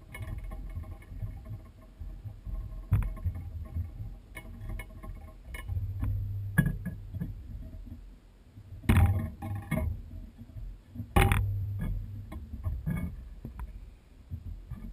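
Close handling noise of fly tying at a vise: irregular rustles, small clicks and soft knocks as thread and materials are wound onto the hook, with two louder knocks in the second half.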